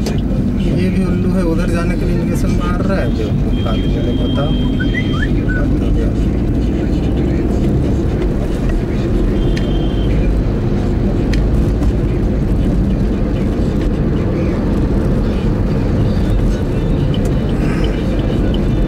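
Steady low rumble of a Maruti Swift's engine and tyres heard inside the cabin while driving in city traffic, with faint voices in the first few seconds.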